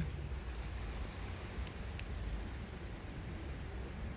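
Steady low wind rumble on the microphone with distant surf from the open sea, and two faint ticks about halfway through.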